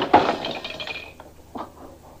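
A sudden crash of something breaking, followed by about a second of rattling, ringing clatter that dies away.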